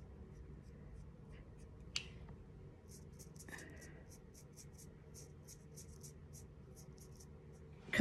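Quiet room tone with a faint steady hum. One soft click comes about two seconds in, and from about three seconds in there is a run of faint, evenly spaced ticks, about three a second.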